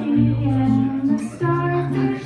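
A woman singing live to her own acoustic guitar, in long held notes that move to a new pitch about one and a half seconds in.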